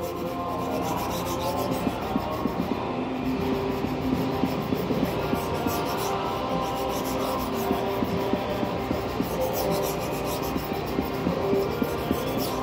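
Steel knife blade ground back and forth on a coarse sharpening stone under firm pressure, a continuous scraping rub. It is grinding away steel on the second side of the edge to raise a burr.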